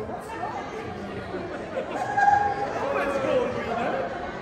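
Chatter: several people talking at once, their voices overlapping.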